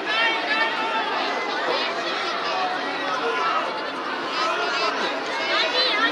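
Many children's voices chattering and calling out at once, overlapping into a lively babble.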